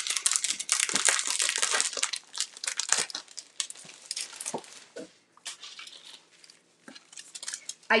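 Paper and packaging of a paint inlay pack crinkling and rustling as the pack is opened and its sheets are handled. The crinkling is dense for the first four seconds or so, then thins to occasional light rustles and taps.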